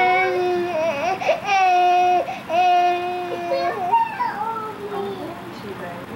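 A baby crying in a run of long, held wails, three or four of them about a second each, fading to whimpers near the end.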